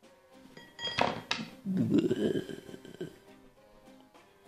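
Slime squelching as it is tipped out of its small plastic barrel: a wet sucking sound that starts sharply about a second in and lasts roughly two seconds, over quiet background music.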